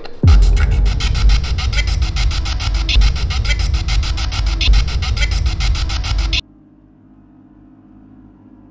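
Handheld spirit box sweeping through radio stations, giving loud static chopped into rapid, evenly spaced pulses of several a second, which cuts off abruptly about six seconds in.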